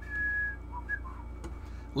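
A person whistling: one steady high note held about half a second, then a few short, lower notes.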